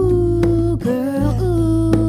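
Live trio music: a woman's voice singing long held notes into a close microphone over sustained bass guitar notes, with a couple of light percussion taps.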